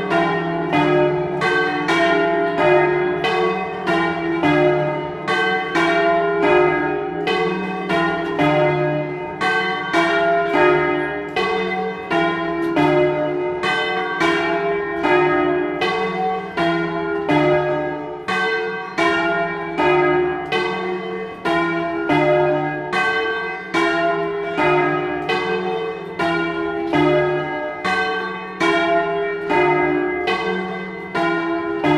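Three bronze church bells, tuned E-flat, F and G and cast by Luigi Magni in 1948 and 1953, swung by ropes and striking in continuous overlapping peals. Strokes come about two to three a second, each ringing on under the next, heard close up from inside the belfry.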